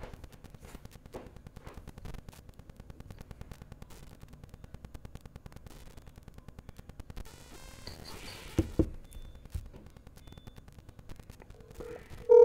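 Faint, fluttering static with a few sharp clicks about eight and a half to nine seconds in.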